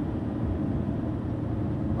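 Steady low road and engine noise inside the cab of a Mercedes-Benz Sprinter van cruising on a highway.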